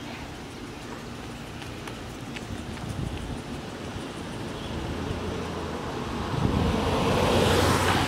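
A car approaching along the street, its engine and tyre noise growing steadily louder over the last few seconds.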